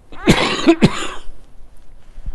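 A man coughing twice in quick succession, about half a second apart, within the first second.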